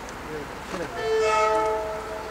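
Horn of an approaching SEPTA Silverliner IV commuter train: one chord blast of several steady notes, starting about halfway in and lasting nearly a second, over a steady hiss of rain.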